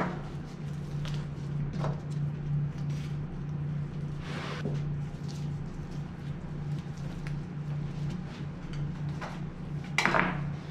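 A steady low hum, with a few faint, brief noises as raw elk hindquarter muscles are pulled apart by hand along their seams.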